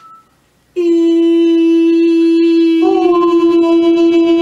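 A man's voice holding one steady chanted note, starting about a second in; near the three-second mark it breaks for a breath and comes back in slightly higher before settling on the same pitch.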